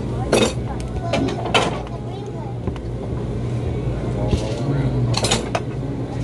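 Restaurant dining-room ambience: background chatter, a few sharp clinks of cutlery and dishes, and a steady low hum.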